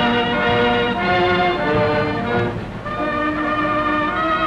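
Orchestral music with brass, playing slow, held chords that change every second or so.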